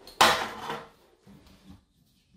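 A metal hand tool dropped and clattering on the floor: one sharp metallic hit with a short ring, then a couple of faint small knocks as it settles.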